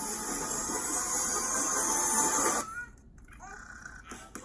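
Cartoon sound effect of fizzing, hissing sparks, like a sparkler, from a baby bursting into flame. It cuts off sharply about two and a half seconds in, leaving faint quieter sounds.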